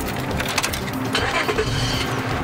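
Car engine being started with the ignition key, the starter cranking.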